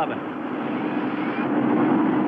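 Steady drone of NASCAR Winston Cup stock car V8 engines, holding an even pitch.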